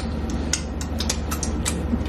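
Mouth sounds of someone eating fried frog legs: small sharp clicks and smacks at irregular intervals, over a steady low hum.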